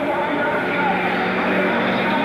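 Stock car engines running steadily, with a person's voice talking over them.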